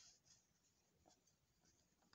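Near silence, with a few faint rustles as a plastic ruler is laid on a sheet of paper and held in place.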